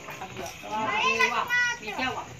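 A child's high-pitched voice calling out in a few quick, wordless syllables, starting a little over half a second in.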